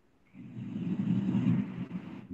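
Low, steady rumbling background noise coming through an open microphone on a video call, cutting in about a third of a second in after a brief dead silence.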